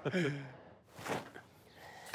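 A man's voice trailing off in a short, falling laugh, then a soft breathy exhale about a second in.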